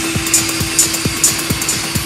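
Techno DJ mix: a kick drum on every beat, a little over two a second, with a hi-hat hitting between the kicks and a steady droning synth note underneath.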